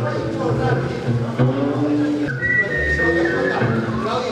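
Double bass playing low, sustained notes, joined just past halfway by a high whistled note held for about a second that slides slightly down.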